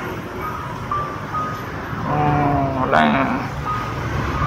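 Street traffic rumbling steadily, with a few short, faint high beeps. A person's voice comes in about two seconds in.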